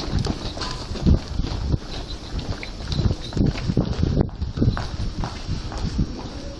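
Footsteps going down stairs and onto a tiled floor, about two steps a second.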